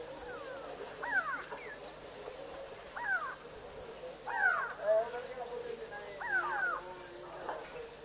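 Repeated short animal calls, each sliding downward in pitch, about one every second or two, over a faint steadier call.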